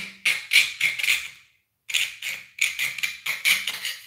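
Razor saw cutting through a cast resin model part: quick back-and-forth strokes, about three to four a second, with a short pause about a second and a half in.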